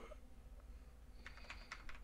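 Faint typing on a computer keyboard: a quick run of about eight keystrokes in the second half.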